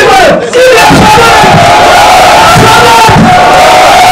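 A man's single long held shout into a microphone, loud through the sound system, over a shouting crowd.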